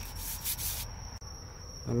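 A short scratchy rubbing of a hand against a surface, lasting just under a second at the start, over a faint steady high-pitched tone.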